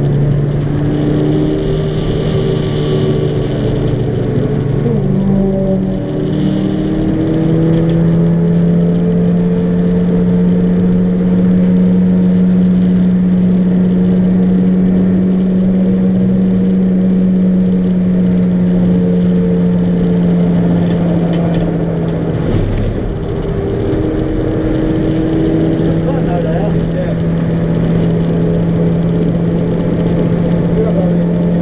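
Track car's engine heard from inside the stripped cabin, driven hard and held at high revs for long stretches. Its pitch steps up a few seconds in, holds steady, drops briefly about three quarters of the way through and picks up again.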